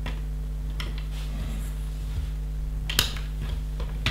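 Small plastic LEGO bricks clicking as pieces are picked from a loose pile and pressed onto a model: a few scattered short clicks, the sharpest about three seconds in. A steady low hum runs underneath.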